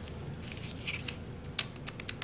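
Light plastic clicks and taps from craft supplies being handled on a tabletop, among them a clear acrylic stamp block. There are several short, faint clicks at uneven intervals, mostly in the second half.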